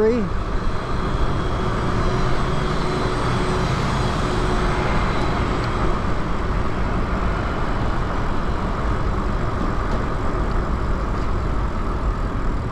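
Steady wind rush and road noise from riding a fat-tire e-bike along a street. A faint hum fades out about five seconds in.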